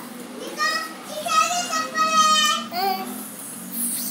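A young girl's voice speaking or calling out, with some long held vowels, from about half a second in until about three seconds in.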